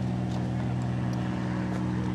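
A steady low hum of constant pitch, like a motor or engine running without change, with a few faint light ticks.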